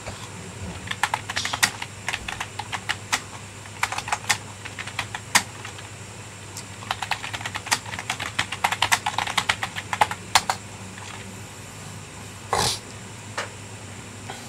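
Computer keyboard being typed on: irregular runs of sharp key clicks with short pauses between runs. A brief burst of noise comes near the end.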